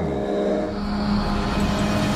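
Hovercraft engine and rear propeller fan running with a steady drone, over a rushing hiss of air and spray on the water.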